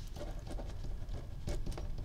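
Pen writing on a graph-paper notebook page: a run of quick, irregular scratchy strokes as letters are written.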